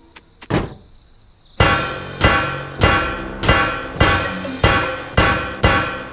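Two metal trash-can lids clashed together like cymbals: a single knock, then a steady run of ringing clangs starting about a second and a half in, about one every 0.6 seconds.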